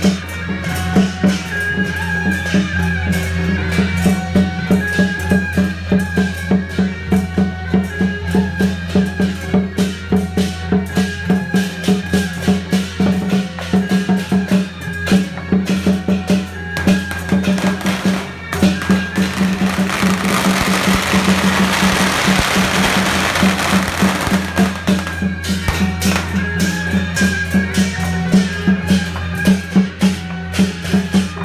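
Procession music with a fast, steady drum and wood-block beat over a sustained low tone. About two-thirds of the way in, a rush of noise rises over the music for some five seconds and then fades.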